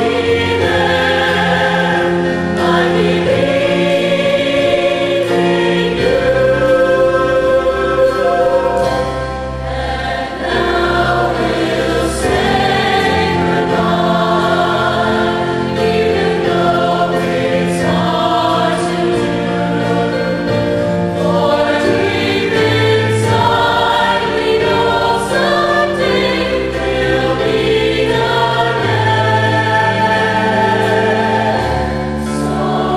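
Mixed choir of young men's and women's voices singing together in harmony, holding long chords.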